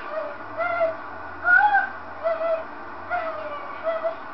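A young girl singing in a high, mock-operatic voice: a string of short sung notes, some arching up and falling back, with breaks between them.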